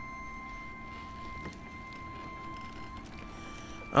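Quiet background music from the episode's soundtrack: a held high note with its octave above, stepping slightly up in pitch about three seconds in.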